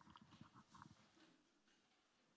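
Near silence: room tone, with a few faint soft ticks in the first second that die away.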